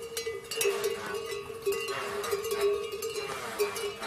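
Bells worn by pack yaks ringing as the loaded animals walk, a steady ringing tone broken by irregular clanks.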